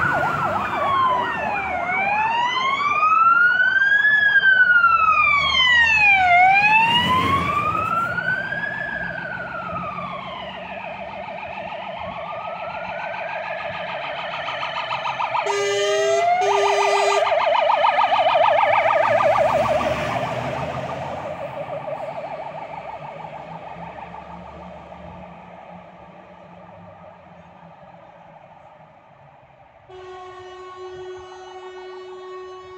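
Fire engine sirens passing close by: a slow wail rising and falling every couple of seconds, then two short air horn blasts and a fast yelp as a Scania fire engine goes past, fading away toward the end.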